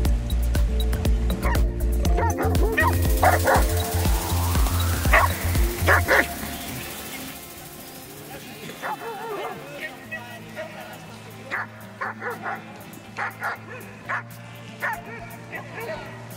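Background music with a heavy bass beat for the first six seconds, then dogs barking and yipping in short, scattered barks while they play.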